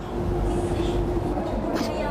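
A steady low drone with one constant held tone under it, and a brief click near the end.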